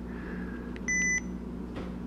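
One short, steady electronic beep from a Sony ICD-SX733 digital voice recorder, about a second in. It is the recorder's key-confirmation beep as the LPCM recording mode is selected in its menu.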